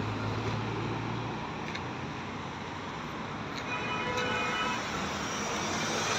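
Road traffic passing on a multi-lane road: a steady wash of car engine and tyre noise, with a low engine hum from a passing car over the first second or so.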